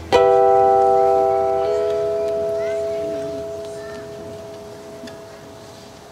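A chord on an acoustic guitar, strummed once and left to ring, fading slowly over several seconds; some of its notes are damped after about a second and a half.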